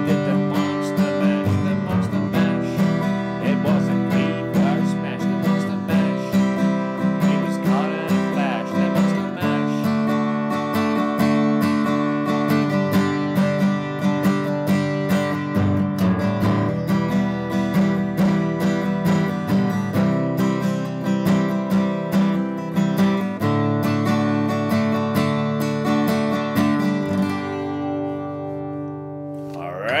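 Martin 000-15M all-mahogany acoustic guitar strummed in a steady rhythm, working through a G, E minor, A minor and D chord progression with a change every few seconds. The last chord thins out and rings down near the end.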